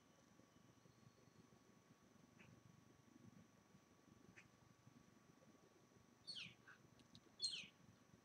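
Near silence, then two short, faint animal calls near the end, each falling in pitch.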